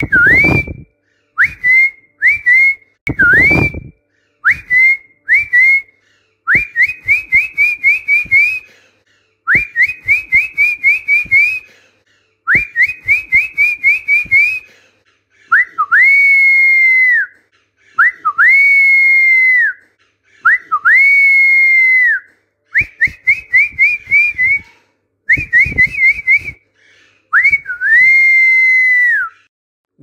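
A person whistling training phrases for parrots to copy. It starts with short rising chirps in twos and threes, moves to quick runs of rising notes, and then gives long held whistles of about a second and a half each, sliding up at the start and dropping at the end.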